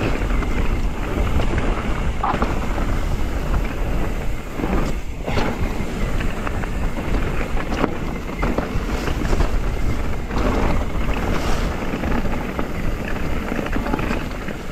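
Wind buffeting the microphone while a mountain bike rolls along a dirt singletrack, with tyre noise over dirt and leaves and a few short knocks and rattles from the bike over bumps.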